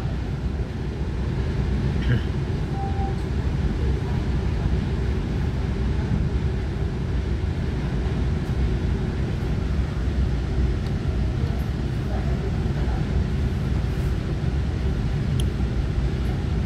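Steady low rumble inside the passenger car of a Taiwan Railway EMU900 electric multiple unit moving out of the station.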